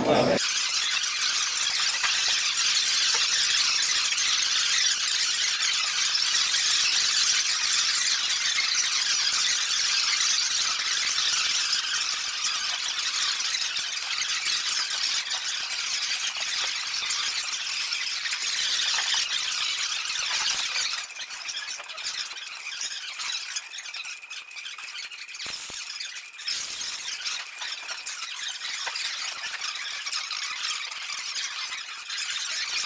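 Meccano Rubik's Cube-solving robot working its cube, its motor and gear noise played back ten times sped up, so it comes out as a continuous high-pitched squealing chatter. It turns quieter about two-thirds of the way through.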